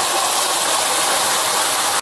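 Wet ground masala paste sizzling as it hits hot oil in a frying pan, a steady hissing crackle.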